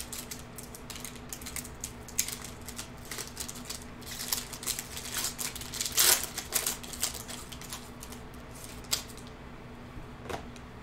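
Foil wrapper of an Optic basketball card pack crinkling and tearing open in the hands, with quick irregular clicks and rustles. The loudest crackle comes about six seconds in, over a faint steady hum.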